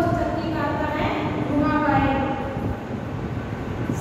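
A woman speaking in Hindi over a steady low background rumble.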